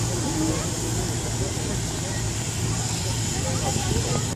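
Diesel shunting locomotive's engine running steadily with a low hum as it passes close below.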